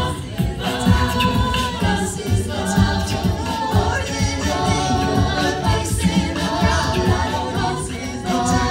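A mixed-voice a cappella group singing into handheld microphones, with a steady beat underneath.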